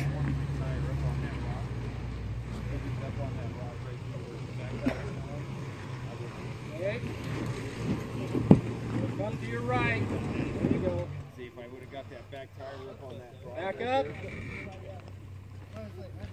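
Lexus LX450's 4.5-litre inline-six running low and steady as the truck crawls down a rock ledge, with one sharp knock about eight and a half seconds in; the engine hum drops away about eleven seconds in. Faint voices call out in the background.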